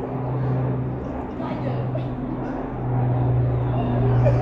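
A steady low-pitched hum that dips briefly a couple of times, with faint talk of passers-by.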